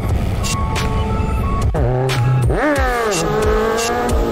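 Music with a steady beat, and from about halfway in a motorcycle engine revving: its pitch dips, shoots up and falls back, then climbs slowly.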